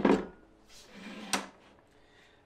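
A wooden panel set down with a knock on a pocket-cutter table and its plywood support, then slid into place with a brief rub and stopped with a second sharp knock about 1.3 seconds in.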